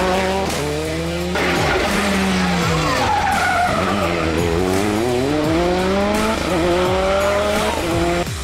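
Skoda Fabia N5 rally car engine at high revs. The pitch drops repeatedly through downshifts and braking for a tight corner, then climbs as it accelerates away. The sound breaks off abruptly about a second and a half in and resumes.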